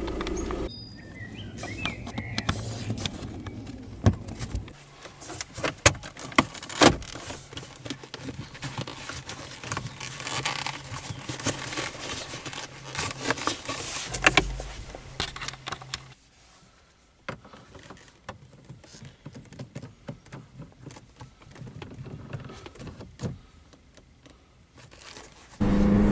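Scattered clicks, knocks and rattles of plastic centre-console trim and the gear lever being handled as the console and leather gear gaiter are refitted around a newly fitted short shifter, with a low steady hum under part of it.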